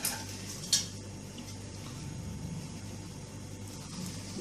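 Two light clinks of utensils against dishes, one at the start and one under a second later, over a steady low hum.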